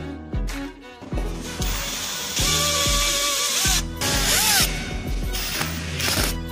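Power screwdriver driving screws into a steel pillar bracket on a cabinet side panel: two runs of whirring, the longer about two seconds, the motor's pitch bending as each run ends. Background music plays under it.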